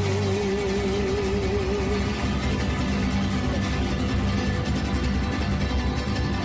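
Mariachi band playing live, with strummed guitars and a strong bass line. A long held sung note with vibrato rides over it and ends about two seconds in, leaving the band playing on.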